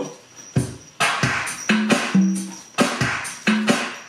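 Programmed R&B beat playing back: tightly quantized drum-machine hits in a steady rhythm over a bass line of short held notes.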